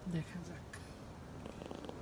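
A woman's voice in a brief murmur at the start, then faint low rumble and background hiss.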